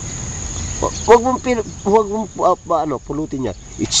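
Insects keep up one steady high-pitched drone throughout. From about a second in, a person's voice joins it in a string of short pitched phrases.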